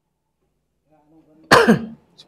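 Near silence, then about one and a half seconds in a man coughs once, a sudden loud burst that falls away.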